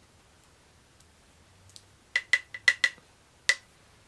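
A makeup brush tapped sharply against the rim of a candle lid: about six quick taps a little past halfway, then one more half a second later, each with a brief ringing tone.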